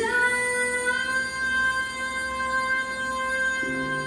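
Music: a woman's voice holding one long sung note that scoops up into pitch at the start, over quiet accompaniment, with lower accompanying notes entering near the end.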